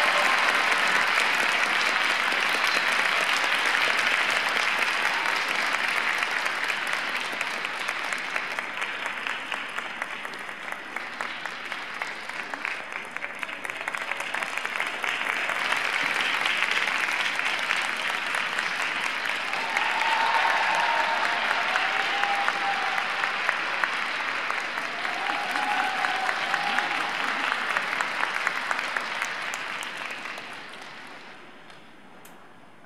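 Audience applauding in an ice rink arena. The clapping eases off about ten seconds in and builds again a few seconds later, with a few faint calls from the crowd later on.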